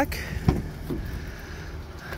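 A pickup truck's rear passenger door latch releasing with one sharp click about half a second in as the door is pulled open, with a fainter knock just after, over a steady low rumble.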